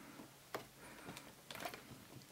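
Faint clicks and taps of a metal drive caddy being slid and pressed into a laptop's drive bay, with one sharper click about half a second in.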